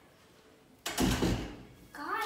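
A wooden front door being pushed shut: one sudden heavy thud about a second in, with a low rumble that dies away over about a second.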